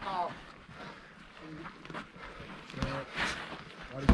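Indistinct shouted calls from people around a boxing ring, coming in short scattered bursts.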